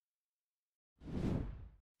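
Dead silence for about a second, then a single short whoosh sound effect lasting under a second: an editing transition swoosh.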